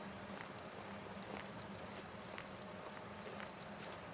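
Slow footsteps, about one step a second, with faint short high chirps between them.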